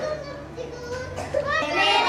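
Young children's voices chattering together, quieter at first and louder from about one and a half seconds in.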